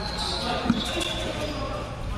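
Basketball bouncing on a hard court during a dribble drive, with one clear bounce a little under a second in.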